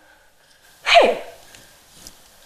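A woman's single short startled exclamation, a sharp "hey" falling steeply in pitch, about a second in.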